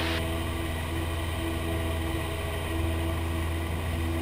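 Cessna 172P's four-cylinder Lycoming engine and propeller running steadily in flight, heard from the cockpit as an even low drone with a few steady tones above it.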